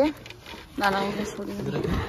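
Speech: a few words of talk, with a short quiet gap between them.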